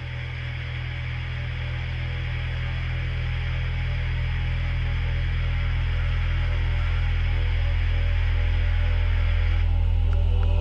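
Dark midtempo electronic music building up: a sustained deep bass drone under a hissing noise layer, swelling steadily louder, with the hiss cutting off just before the end.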